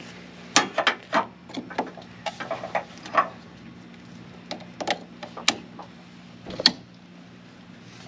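Clamps of a handheld battery load tester being clipped onto a truck battery's terminals and the leads handled: a series of sharp clicks and knocks, thickest over the first three seconds and then scattered, over a faint steady low hum.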